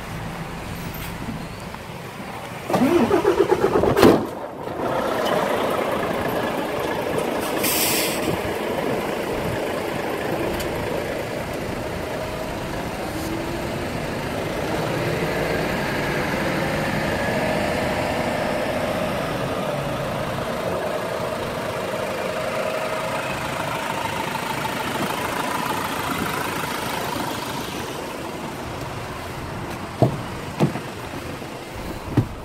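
IVECO Daily 35S21's 3.0-litre turbodiesel cranked by the starter for about a second and a half, catching about four seconds in, then idling steadily.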